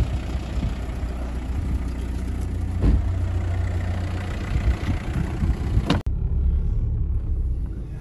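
Volkswagen Passat 1.9 TDI four-cylinder diesel running at a steady rumble just after its turbo was replaced, with a single thump about three seconds in. About six seconds in the sound changes abruptly to the duller engine and road noise heard inside the car's cabin as it pulls away.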